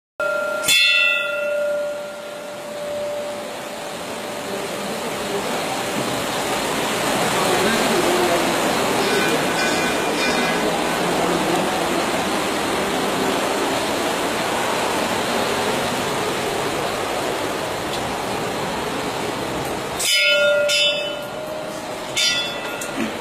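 A hanging brass temple bell struck once, ringing out with a clear tone that fades over a second or two. A steady rushing, echoing noise follows. The bell is struck twice more near the end.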